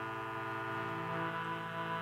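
George Case baritone English concertina playing sustained chords, the bass notes moving to a new chord under a second in.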